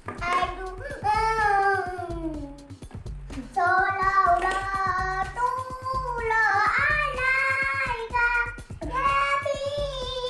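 Background music: a song with a sung melody over a steady beat.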